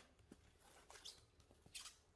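Near silence with a few faint, short rustles and light handling noises as foam packing and the cooler are moved by hand; the most noticeable comes near the end.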